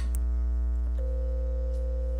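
A mouse click, then about a second in a single steady electronic tone lasting just over a second: the Zoiper softphone's alert for the incoming call. Under it a loud, constant mains hum.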